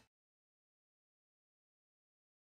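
Silence: the sound track is blank.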